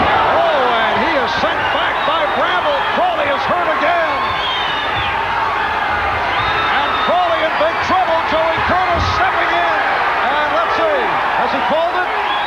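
Boxing arena crowd yelling and screaming together as a fighter is battered in the corner and knocked down, with a couple of sharp thuds standing out.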